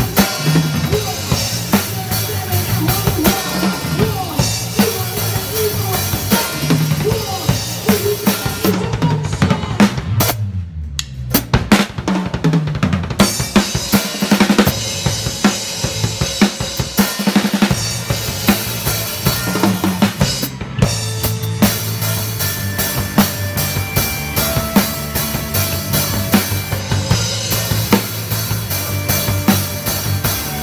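Acoustic drum kit played live with a band, heard close from behind the kit: kick, snare and cymbals drive a steady beat over the band's pitched instruments. About ten seconds in, the cymbals cut out for a moment while a low note slides down, then the full beat returns.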